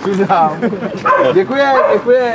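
Several short, high-pitched cries, each sliding up or down in pitch, among people's voices.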